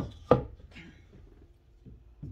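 A couple of sharp knocks in the first half second from a wooden-framed painting being set down and handled.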